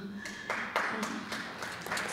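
Audience applause breaks out about half a second in and grows, many hands clapping at once.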